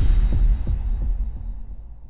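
Deep bass impact of an animated logo sting, landing as a rising swell cuts off. A few low throbbing pulses follow, and the rumble fades away over the next two seconds.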